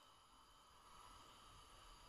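Near silence: faint steady room tone with a thin, constant background hum.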